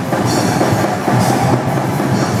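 Live death-thrash metal band playing loud and fast: distorted electric guitars over drums, with cymbal hits about once a second.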